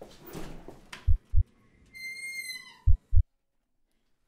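Heartbeat sound effect: pairs of deep low thumps, a double beat about every two seconds. About two seconds in, a brief high-pitched squeal holds one pitch and dips at the end.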